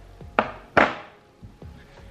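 Two sharp knocks, the second louder and ringing briefly, as a jar of face cream is put down on a hard surface.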